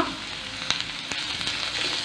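Chopped onions frying in hot oil in a pan, sizzling steadily, with a couple of faint clicks.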